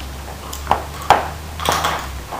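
A large bone knocking on a laminate floor as a dog noses and gnaws at it: a few sharp knocks, the loudest about a second in, and a short cluster near the end, over a steady low hum.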